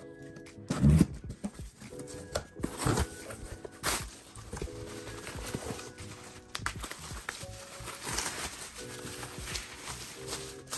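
Soft background music playing over hands opening a cardboard box and handling a bubble-wrapped package, with a loud thump about a second in.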